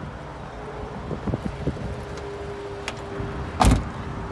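A faint steady hum with a few light clicks, then one loud thump near the end, typical of a 2003 Honda S2000's door being shut.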